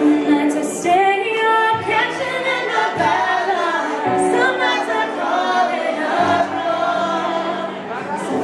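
Female vocals singing over electronic keyboard chords, performed live: a medley of pop songs sung over one repeating four-chord progression, the keyboard's low notes changing every second or two.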